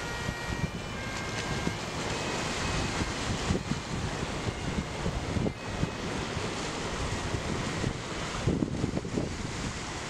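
Small waves washing and breaking over flat shoreline rocks, a steady rushing wash of surf, with gusts of wind buffeting the microphone.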